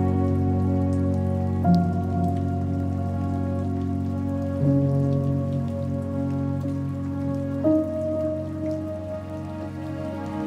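Slow ambient music of sustained chords, changing about every three seconds, over a steady patter of rain falling on water.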